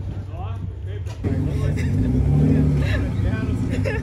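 Car engine running at low revs, getting louder about a second in, with a brief rise and fall in pitch near the middle. Voices talk over it.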